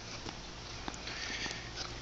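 Steady outdoor background noise on a handheld phone microphone, with soft ticks about twice a second from footsteps on grass.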